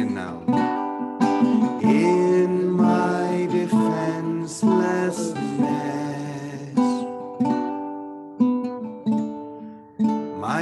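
Ukulele strummed in slow chords while a man sings a simple, slow melody. The singing drops away near the end, leaving a last chord ringing and fading.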